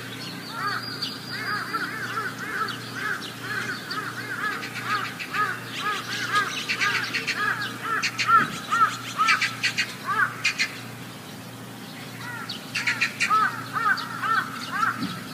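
Birds calling: a quick run of short, repeated chirps, with harsher, rasping calls mixed in during the middle stretch.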